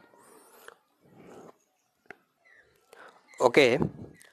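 A few seconds of faint, soft breathy noises with one small click about two seconds in, then a man says a short 'okay' near the end.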